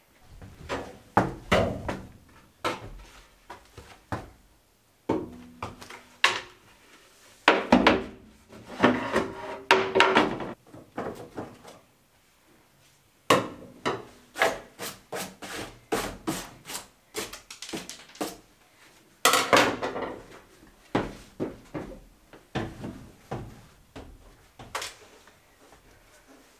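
Plywood floor sheet being handled and worked into place on a bus floor frame: an irregular run of wooden knocks, thumps and short scrapes, with a brief pause about halfway through.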